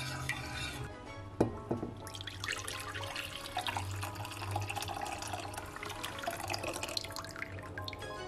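A stream of pumpkin purée and milk mixture poured into a glass bowl, splashing and trickling from about two seconds in, over background music. A single sharp knock sounds a little over a second in.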